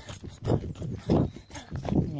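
A tired runner's heavy breathing, in quick rhythmic breaths about two a second, from fatigue late in a long run.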